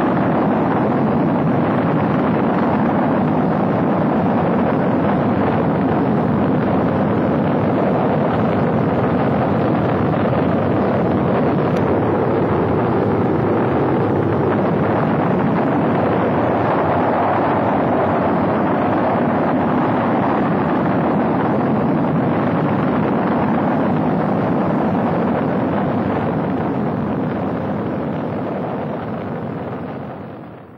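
Steady roar of the Saturn V rocket's first-stage F-1 engines during ascent, fading out over the last few seconds.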